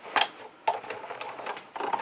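Hard plastic clicking and sliding as clear acrylic cutting plates are set down and pushed across the platform of a Sizzix Big Shot die-cutting machine. There are a couple of sharp clicks, then a softer rubbing slide.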